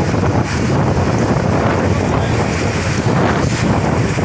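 Wind rushing over a phone microphone carried in a moving vehicle: a loud, steady, rumbling noise.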